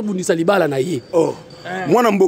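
A man talking in short phrases, with brief pauses.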